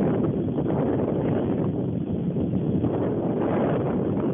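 Wind buffeting the microphone of a camera moving alongside a cyclist: a steady, loud, low rushing noise.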